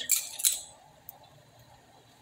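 Metal spoon clinking and scraping against an aluminium saucepan as sugar is added to boiling tea, two sharp clinks in the first half second, then a small tick. After that the pot is left bubbling faintly on the boil.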